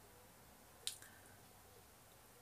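Near silence, broken about a second in by one short, wet-sounding click.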